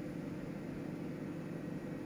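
Quiet, steady room tone: a low hum with faint hiss, with no distinct event.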